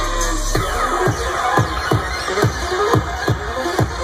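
Live electronic bass music played loud over a festival sound system, heard from within the crowd. A deep held bass drops out about half a second in and a steady kick-drum beat takes over, about two beats a second, under a wavering synth line.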